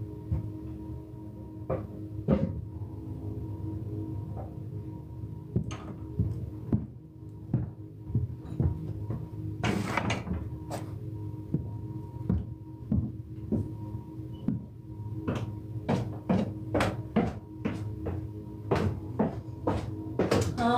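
Soft ambient background music of steady held tones, with irregular knocks and clunks of things being handled and set down, more frequent in the last few seconds.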